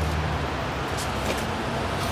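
Road traffic on a city street: a steady hiss with a low engine hum that fades about half a second in.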